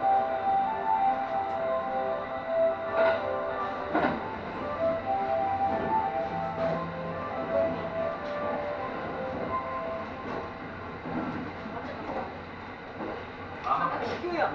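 Kintetsu Ise-Shima Liner electric express running on the line, heard from the driver's cab: a steady rolling noise with a few sharp knocks from the track, about three and four seconds in and again near the end, and a series of short held tones at several pitches through the first part.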